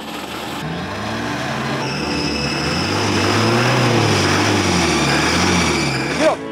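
An old jeep's engine turned over with the ignition key, its pitch wavering, rising and falling, growing louder over the seconds.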